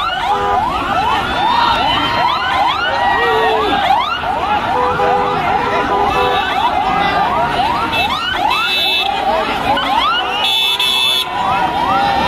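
A vehicle siren in a fast yelp, rising sweeps about three a second, over a shouting crowd. Car horns give several short blasts.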